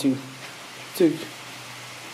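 A man's voice: the end of a spoken word, then a short falling vocal sound about a second in, over quiet room tone.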